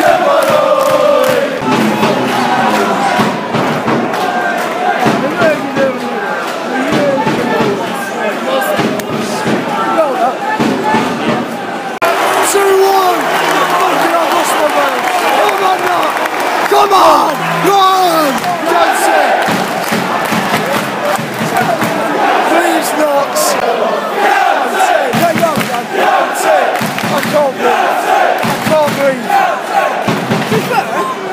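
Football crowd in the stand cheering, chanting and shouting in celebration of a goal, with a fan yelling close to the microphone.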